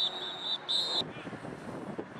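Referee's pea whistle blown in two blasts, a longer trilling one that stops about half a second in and a short one just before the one-second mark, signalling the play dead after the tackle.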